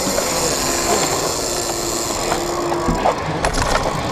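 Steady wind and running noise on a motorcycle's onboard camera as the bike rolls slowly across tarmac, with a faint steady engine note. A deeper rumble comes in near the end.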